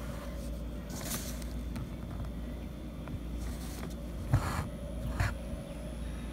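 Embroidery needle and thread being pulled through cloth stretched in an embroidery hoop: a few short rasps, the sharpest about four seconds in with a light knock, over a steady low hum.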